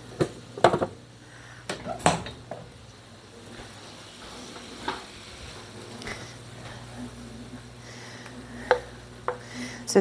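Sharp clinks and knocks of cookware and utensils, several in the first two seconds and a few more later, over a faint steady hum and a low sizzle of broccoli, onion and garlic oil cooking in bacon grease in a frying pan.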